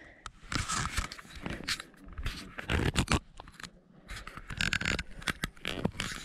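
Irregular scraping and scratching with scattered clicks: handling noise, things rubbing close to the microphone.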